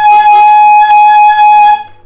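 Saxophone holding one long, steady high note, played as the example of a high pitch, stopping shortly before the end.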